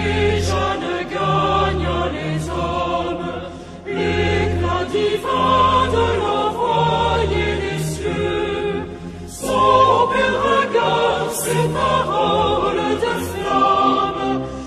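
Choir singing a French religious song over sustained low accompanying notes, in phrases with brief pauses between them.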